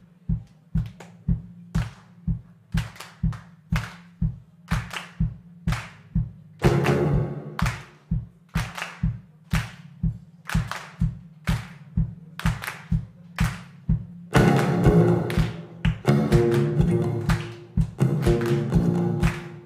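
Hand clapping in a steady rhythm over an even low thud on each beat, about two to three beats a second, setting a clap-along rhythm for an audience. About seven seconds in, the clapping grows fuller. A little after fourteen seconds, an acoustic guitar comes in strumming along.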